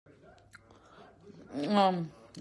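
A few faint mouth clicks, then a woman's voice about one and a half seconds in, holding one steady pitch for about half a second.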